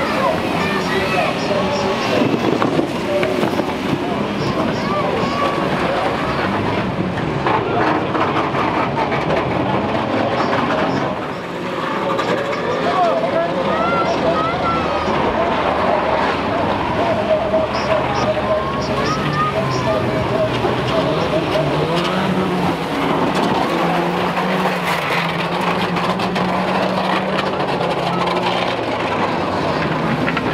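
Several racing vans' engines revving and running together around a banger-racing oval, with a voice over the loudspeakers.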